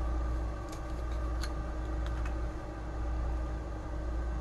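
Steady low background hum with a few faint, light clicks in the first half, from small plastic diamond-painting drill containers being handled and set down.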